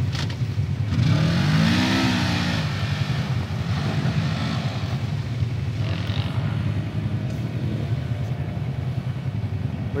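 Side-by-side UTV engine running, revving up and back down about a second in, then a steady low drone.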